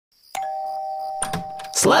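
Doorbell ringing: two steady tones start suddenly and hold for about a second and a half before stopping, with children calling out "trick or treat" near the end.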